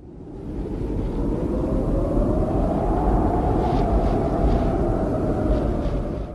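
A steady engine-like rumble that fades in at the start, with a droning note that climbs slightly and then eases off.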